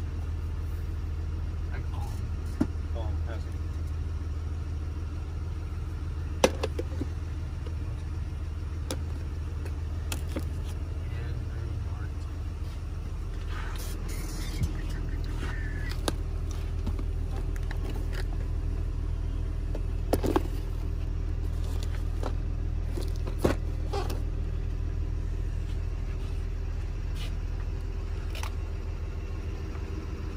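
A steady low machine hum, like an idling vehicle engine, runs throughout, with scattered light clicks and taps as boxes and packaged tools are handled.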